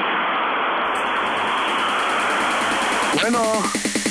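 A steady hiss of noise heard over a telephone line, with a voice saying one word near the end.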